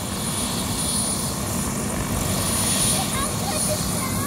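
Helicopter running on the ground with its rotor turning, a steady engine whine and blade chop, before liftoff.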